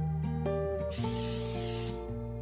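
Background music of plucked guitar notes. About halfway through, a loud, even spray hiss joins it for about a second and cuts off at the end.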